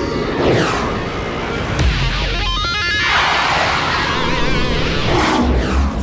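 Cartoon soundtrack music with sound effects laid over it: sweeping whooshes near the start and end, and a stepped, warbling electronic effect in the middle.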